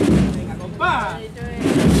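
Deep booming beats from a procession band's drums, with a person's voice calling out briefly in the middle.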